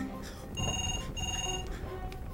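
Home telephone ringing electronically: two short rings of about half a second each, with a brief gap between them.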